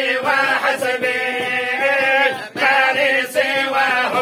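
A group of men chanting a devotional invocation together in unison, without instruments, on long held notes, with a short pause for breath about two and a half seconds in.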